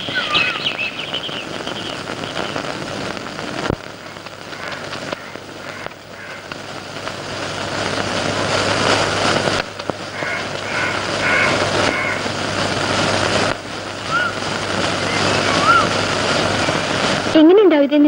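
A steady rushing background noise, with a few short high chirps like bird calls near the start and again in the second half. A voice begins just before the end.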